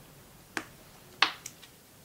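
Small hard clicks, as when an oil pastel stick is put down on a hard surface: a light click about half a second in, a sharper, louder one just past a second, then two fainter ticks.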